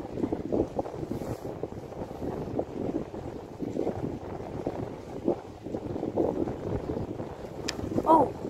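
Wind buffeting the microphone in uneven gusts, a low rumbling that rises and falls. A brief sharp click sounds near the end.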